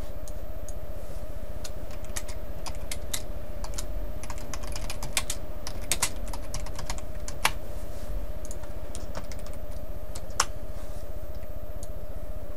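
Typing on a computer keyboard: irregular keystrokes that come in a quick run about four to six seconds in, then a few single sharper clicks, over a steady low hum.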